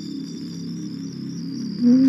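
Steady cricket chirping over a soft, low music bed. Near the end a much louder sustained low musical note comes in.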